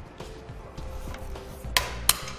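A sharp click about three-quarters of the way in, as a pry tool works the pressure-pin cap off the end of the bow roller's shaft, over soft background music.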